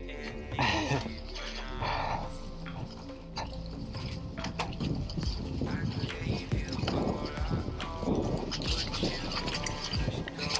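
Downhill mountain bike riding a rough, muddy forest trail: an irregular run of knocks and rattles from the bike and tyres over the bumps.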